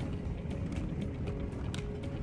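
Vehicle cabin noise while driving on a gravel road: a steady low rumble from the tyres and road, with scattered clicks and rattles.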